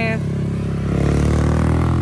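A motor vehicle engine running at a low, steady pitch, growing louder about a second in.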